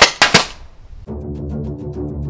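A hopper-fed paintball marker firing a couple of quick shots in the first half second, each a sharp pop. Background music with a steady beat comes in about a second in.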